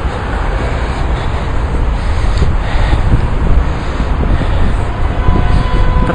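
Wind buffeting a handheld camera's microphone outdoors: a steady, loud rumbling hiss.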